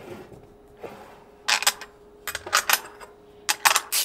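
Metallic clicking and clinking in three short clusters as hardware is worked on the terminals of LiFePO4 prismatic cells: nuts, bus bars and a ratcheting driver on the terminal studs.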